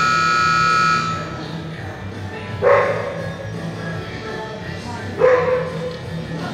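An arena buzzer sounds once for about a second over background rock music, followed by two short, sharp calls about two and a half seconds apart.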